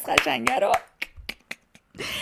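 A short run of sharp, separate hand clicks, about five in the last second, made with the hands in celebration.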